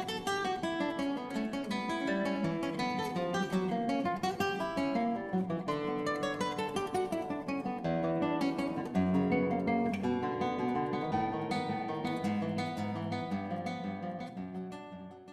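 Acoustic guitar music with a fast, steady flow of notes.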